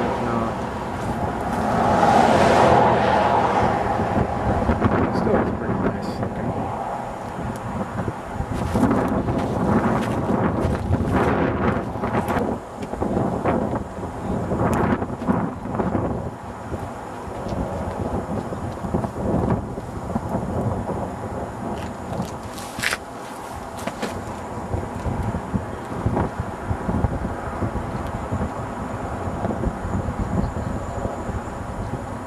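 Wind buffeting the camcorder microphone: a loud, uneven rumble that rises and falls with the gusts, with scattered knocks.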